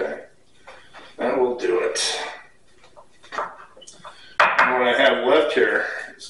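A man's voice in two stretches of indistinct talk, with a few light knocks and clinks between them.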